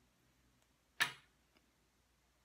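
A single sharp click about a second in from a wire soap cutter as it slices a bar from a cured soap loaf, followed by a much fainter tick.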